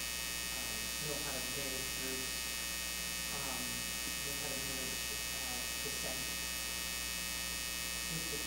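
Steady electrical mains hum and buzz in the sound system, with a woman's voice faint beneath it.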